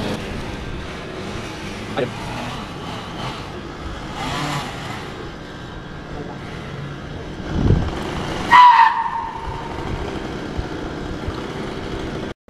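Steady outdoor background noise beside a parking lot, with a low thud a little before eight seconds in and a short, loud squeal just after it.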